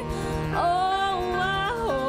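A woman singing with a bowed cello accompanying. A new sustained note comes in about half a second in and is held until it drops near the end.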